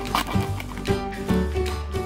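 Background music with a steady beat, about two beats a second, over held notes and a bass line.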